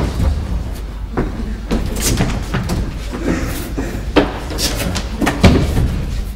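A series of knocks and clunks from stage-set doors and window shutters being shut and latched, the loudest about five and a half seconds in, as everything is locked up for fear of intruders.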